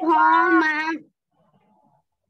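A child's voice calling out one long, drawn-out word, lasting about a second.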